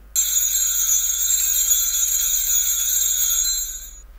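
Altar bells marking the elevation of the consecrated host: a cluster of small bells ringing steadily with a bright, high sound for about three and a half seconds, then dying away near the end.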